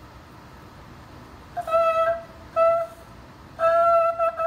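Small shofar blown in three blasts: a short note about a second and a half in, a shorter one, then a longer held note near the end, all at one steady pitch.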